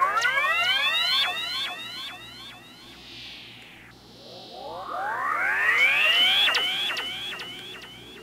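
Stylophone Gen X-1 run through effects pedals: clusters of rising, arching pitch sweeps piled up like echoes, in two swells about five seconds apart, with sharp clicks among them and fainter falling tones in between.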